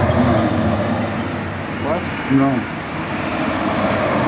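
Steady outdoor background noise, like a vehicle or traffic running, with a man's brief 'What? No.' about two seconds in.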